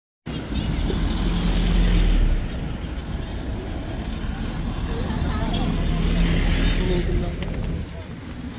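Street traffic: motor vehicles running past a pedestrian crossing, with a steady engine hum and low rumble, loudest in the first two seconds and swelling again later, as people talk nearby.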